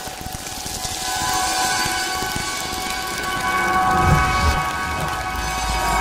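Station-ident sound effect: a swelling whoosh of noise under a held cluster of steady tones, building in loudness, with a low rumble about four seconds in and again near the end.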